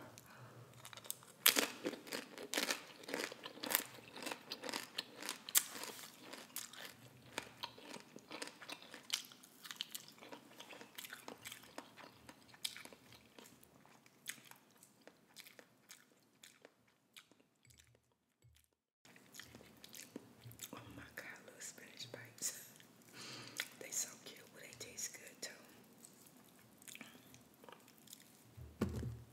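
Crunchy tortilla chips bitten and chewed right at the microphone, with dense crisp crunches for the first ten seconds or so, then softer chewing and wet mouth sounds. The sound drops out briefly about two-thirds of the way through.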